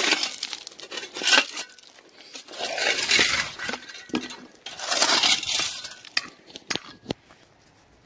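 Footsteps crunching over gravel and loose rocks, with stones clinking, in a few uneven swells and a couple of sharp clicks near the end.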